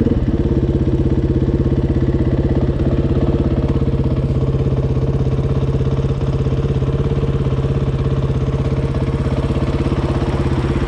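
KTM 450 EXC single-cylinder four-stroke dirt bike engine idling at a standstill, running steadily with a fast, even beat.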